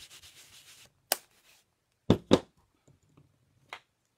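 A rubber stamp being rubbed clean with quick back-and-forth rasping strokes for about the first second. Then come four sharp knocks, the loudest two close together about two seconds in.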